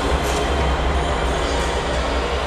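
Background electronic music in a dense, noisy passage over a steady low bass.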